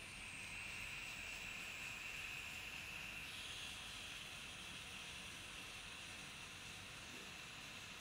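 Laboratory water aspirator (filter pump) on a running tap, a faint steady hiss of rushing water and drawn air as it pulls a vacuum through a Büchner funnel and flask during vacuum filtration. The hiss shifts slightly in tone about three seconds in.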